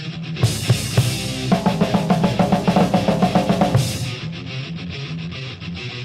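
A rock band's heavy metal cover song with the drum kit up front: a cymbal crash about half a second in, then a fast drum fill of rapid strikes over the next two seconds, settling back into a steady beat with the band.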